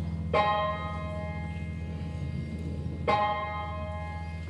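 Live band's slow instrumental passage: two bell-like struck notes, about three seconds apart, ring out and fade over a sustained low bass drone.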